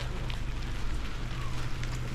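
Steady crackling noise of a bicycle rolling over a dirt track, with wind on the microphone.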